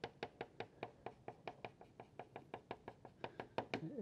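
Soft pastel stick stroked quickly back and forth on textured paper clipped to a wooden easel board: a rhythmic run of short, quiet scratchy taps, about six a second, as dark color is hatched in.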